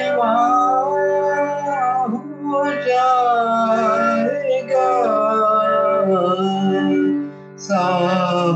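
A man singing a devotional song in long, wavering held phrases over a steady drone accompaniment, with a short pause for breath about seven seconds in.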